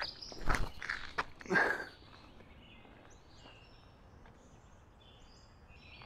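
A player's footsteps and scuffs on a concrete tee pad during a forehand disc golf throw: a few quick steps and a hard plant about half a second in, then a short rushing burst. After that only quiet woodland background with faint bird chirps.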